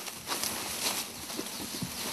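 Leafy bamboo branches rustling faintly, with small irregular crackles, as gloved hands push them into place and fasten them.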